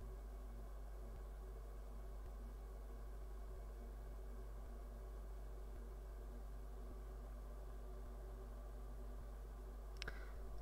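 Quiet room tone: a faint, steady low hum with no other events.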